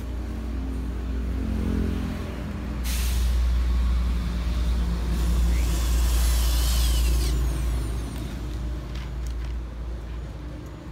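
Cordless drill run against the banner's steel frame, starting abruptly about three seconds in and running for about four seconds before stopping, over a steady low rumble.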